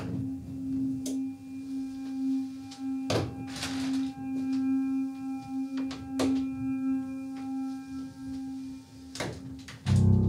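An eerie, steady low drone tone from a horror film's sound design, with faint higher tones above it. About half a dozen sharp knocks are scattered through it a second or more apart; the first comes at the very start, and one a little past three seconds trails into a brief hiss.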